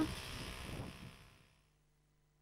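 Faint background noise, like street ambience, fading out over about a second and a half into complete silence.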